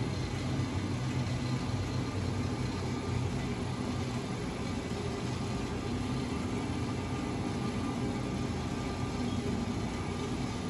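Elevator traction machine running with its brake drum turning: a steady low hum from the motor and sheave.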